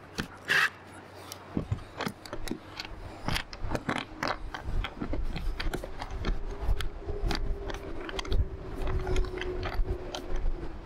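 Irregular metallic clicks and knocks from an aluminium antenna mount being tightened and worked by hand, with a short cordless-drill burst about half a second in. A low rumble and a faint steady hum rise behind it from a couple of seconds in.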